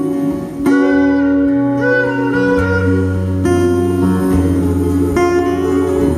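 Live band playing an instrumental passage: guitar chords struck every couple of seconds over long held low notes that step from pitch to pitch, with no singing.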